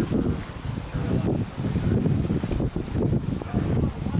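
Wind buffeting the microphone: an uneven, rumbling low noise.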